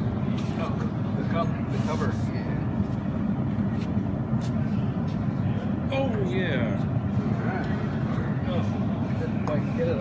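Steady low rumble of workshop background noise, with indistinct voices from people standing around and a few light metallic clinks as tools and parts are handled.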